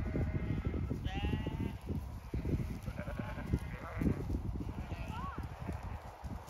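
Zwartbles sheep bleating: a long call about a second in, several more around three to four seconds, and a short call near the end, over a continuous low rumbling noise.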